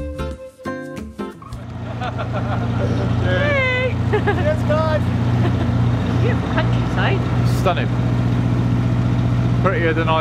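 Music ends about a second and a half in, and a narrowboat's BMC 1.5 four-cylinder diesel engine is then heard running steadily at an even pitch.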